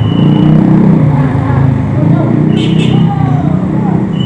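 City street traffic: motor vehicles running close by in a steady mass of low engine noise, with faint voices of people around.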